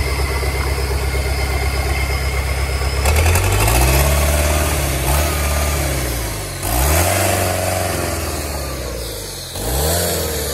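Freshly rebuilt Isuzu four-cylinder diesel engine running on a stand. It idles steadily for about three seconds, then is revved up and let back down several times.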